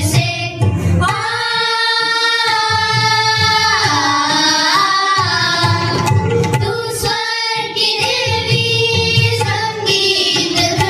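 A devotional prayer sung by children's and women's voices, with long held notes and a slow downward slide about four seconds in, over a steady musical accompaniment.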